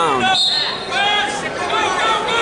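Voices of coaches and spectators calling out in a large gym, with a brief high steady tone about half a second in.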